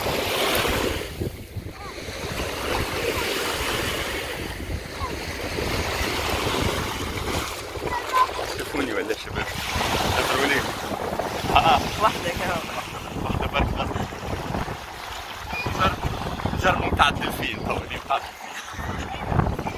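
Small waves washing onto a sandy shore, with wind rumbling on the microphone.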